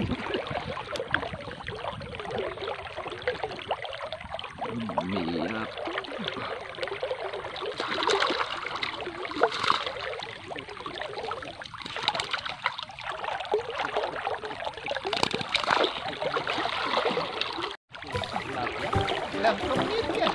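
Water sloshing and trickling around a person wading chest-deep in a muddy waterway while handling a fish and a mesh bag, with faint voices.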